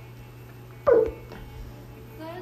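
A single short yelp-like call, loud and sliding down in pitch, about a second in.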